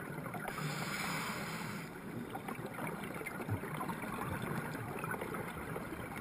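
Underwater ambient noise of a scuba dive recorded through a camera housing: a steady low rumble with faint crackling. A rush of scuba exhaust bubbles rises from about half a second in and fades after about a second and a half.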